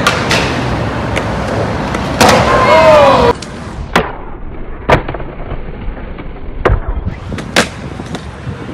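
Skateboard wheels rolling on concrete, then a series of sharp cracks of the board's tail popping and the board landing, four distinct ones in the second half.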